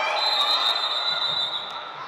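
Referee's whistle blown in one long, steady, high blast of nearly two seconds, signalling a stop in play, over the echoing noise of a gym.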